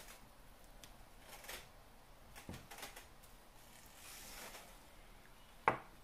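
Quiet handling of a pineapple corer-slicer: soft scrapes and rustles as wedges are worked off the stainless steel corer and its plastic slicing wheel, with a sharp knock near the end.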